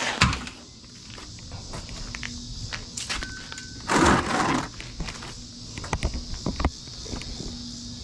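A black plastic oil drain pan being handled on a concrete floor, with scattered light knocks and one louder scrape about halfway through as it is slid into place. A steady high chirring of crickets runs underneath.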